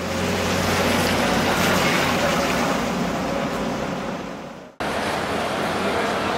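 Steady outdoor street noise of traffic and a running engine, with a low engine hum for the first two seconds. The sound fades and cuts out abruptly about three-quarters of the way through, then resumes.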